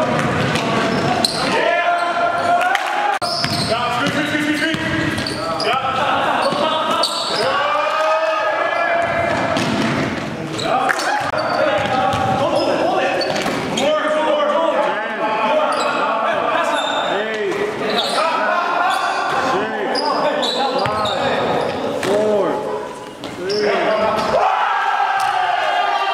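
A basketball bouncing on a gym floor amid indistinct players' voices and calls, echoing in a large gymnasium.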